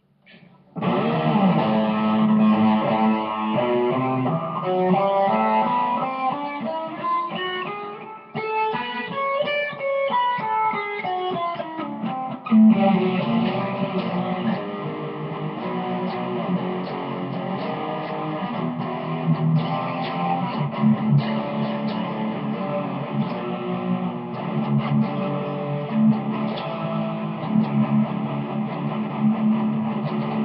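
Guitar being played solo, starting about a second in, with a run of notes climbing and then coming back down around ten seconds in.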